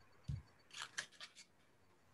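Faint handling noise on a meeting participant's microphone: a brief low vocal sound about a third of a second in, then a quick run of about six sharp clicks or scrapes over the next second.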